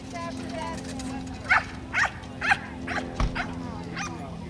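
A small dog barking repeatedly while running an agility course, about two barks a second, starting about a second and a half in.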